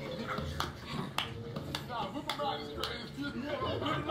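Men's voices and laughter from a played video over background music with a steady beat of clicks about twice a second and a low bass line.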